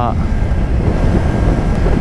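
Steady wind rushing over a helmet-mounted microphone on a motorcycle cruising at about 50 mph, a dense low rumble throughout.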